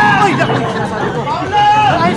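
Several people's voices talking and calling out over one another in excited chatter.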